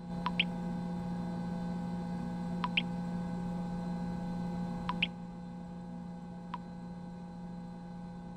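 A steady low electrical hum with a sharp tick about every two seconds. For the first five seconds each tick is followed by a short, high ping.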